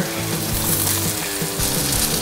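Background music with steady held tones, over a faint sizzle of sliced onions and ginger frying in oil.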